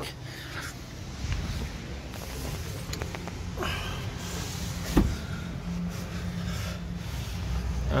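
Camera handling and movement noise over a steady low workshop hum, with a single sharp knock about five seconds in.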